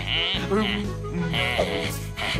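Cartoon background music with held notes over a stepping bass line, with a couple of short, wavering vocal sounds from an animated character.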